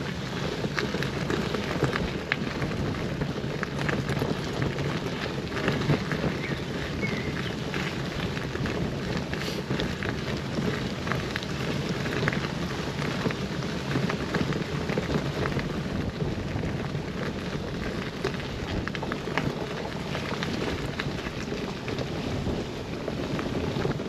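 Bicycle tyres rolling over a gravel path: a steady crunching hiss with fine crackles throughout.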